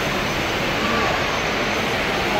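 Steady hubbub of a busy airport terminal hall: indistinct voices over a constant rumbling noise, with wheeled suitcases rolling across the floor.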